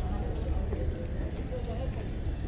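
Low, fluttering rumble of wind on the microphone, with faint distant voices.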